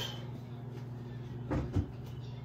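Two short, dull knocks about a second and a half in, over a steady low hum.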